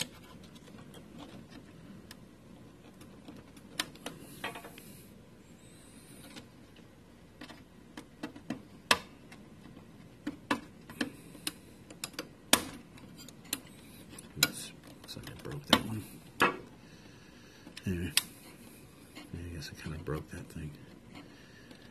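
Irregular sharp clicks and taps, more of them in the second half, as fingers work flat ribbon cables out of their plastic connectors on an HP LaserJet M2727nf printer's formatter board.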